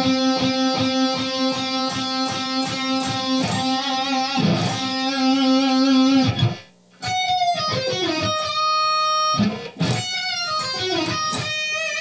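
Electric guitar lead lick: for about six seconds one note is picked over and over at about four strokes a second, then after a brief break come notes bent up and down in pitch. The accented notes are raked, the pick dragged through palm-muted lower strings on its way to the target string for a chunkier, harder attack.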